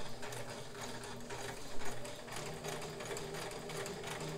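Kenmore 158.1941 all-metal sewing machine running at a slow, steady speed while sewing a wide zigzag stitch: an even motor hum with the regular tick of the needle strokes.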